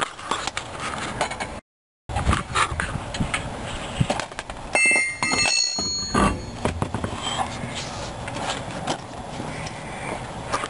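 Steel car wheel being pulled off its hub, with knocks, clicks and scraping of metal parts and rubber tyre on concrete. A short metallic ring sounds about five seconds in, and the sound drops out briefly near the start.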